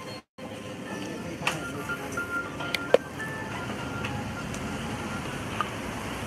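A faint, simple electronic melody of thin short tones over steady background noise, with a few light clicks. It is cut off by a moment of silence just after the start.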